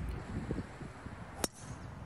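A single sharp click of a golf club striking a ball, about one and a half seconds in, over a low outdoor rumble.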